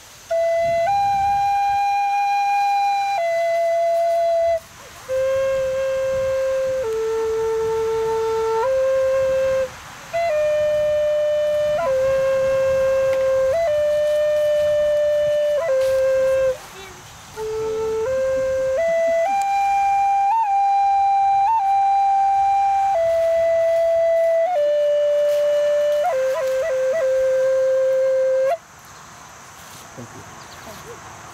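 A solo flute plays a slow melody of long held notes in four phrases, with short breaths between them. Near the end come a few quick flicked grace notes before a final held note.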